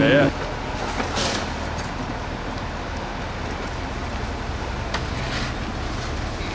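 Steady low rumble of a vehicle engine running under outdoor noise, with faint short knocks about a second in and again about five seconds in.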